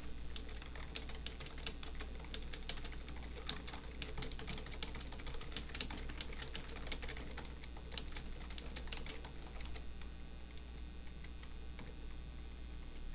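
Fast typing on a computer keyboard: a dense run of key clicks that thins out near the end, over a steady low hum.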